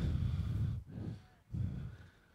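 Low, muffled buffeting puffs on a close microphone, three of them in two seconds, the first the longest.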